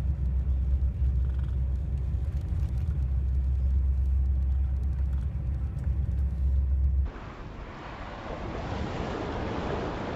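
A steady low rumble cuts off abruptly about seven seconds in. It gives way to small waves of surf washing and hissing over a pebble beach.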